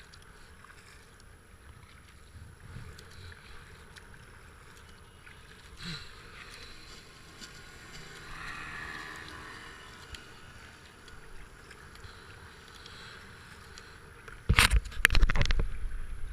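Water washing along a racing kayak's hull with the paddle's strokes, and a race power boat's engine heard faintly as it passes around eight seconds in. Near the end come a few loud, rough bursts of noise.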